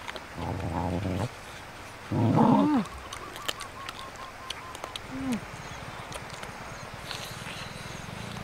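Dogs and a person eating, with small scattered clicks of chewing and food being moved. Over them come short throaty voiced sounds: a steady low hum about half a second in, a louder growl-like sound with a falling pitch about two seconds in, and a brief falling note near the middle.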